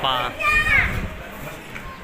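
A small child's brief high-pitched vocalisation that rises in pitch and fades within the first second, with wind rumbling on the microphone.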